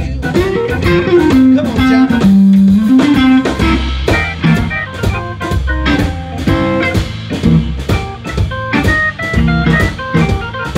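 Live blues band playing an instrumental passage: electric guitar phrases with bent notes over organ and drums.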